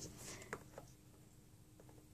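Near silence: room tone with low hum, broken by two faint clicks in the first second.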